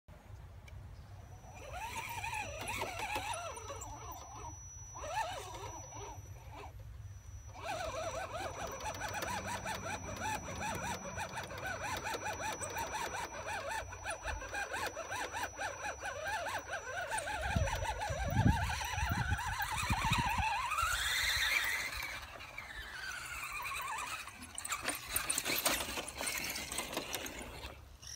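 Radio-controlled Axial SCX10 crawler's electric motor and gears whining as it climbs rock, the pitch wavering up and down with the throttle. The whine rises steeply about three-quarters of the way through. A few low thumps come shortly before that rise.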